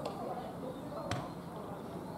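A rugby ball kicked at goal: one sharp thud of boot on ball about a second in.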